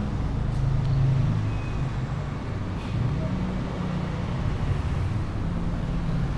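A low, steady background rumble with a shifting hum in the bass, like passing road traffic, at an even loudness.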